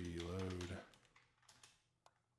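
Computer keyboard keys clicking as a few letters are typed, a handful of faint, sharp taps in the second half.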